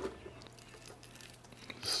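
Faint, soft handling sounds of roasted vegetables being dropped into a plastic blender jar: a light click at the start, then small scattered taps and squishes.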